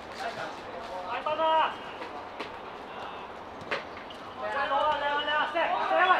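Football players shouting short calls to each other across the pitch, once about a second in and again in a longer run of calls over the last part, with two sharp knocks of the ball being kicked in between.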